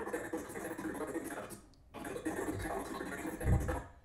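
Choppy, garbled playback of a video clip's soundtrack being scrubbed through on an editing timeline. It comes in two stretches of about two seconds each, split by a short gap, with a low thud near the end.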